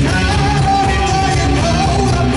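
Live melodic black metal band playing loud: distorted electric guitars, drums and keyboard, with a high note held for about a second in the middle.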